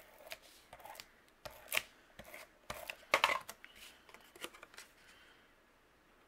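Tape runner laying adhesive on cardstock in a few short strokes, with paper rubbing and sliding as the panel is set down and pressed onto the card base. The two strongest strokes come just under two seconds in and just after three seconds.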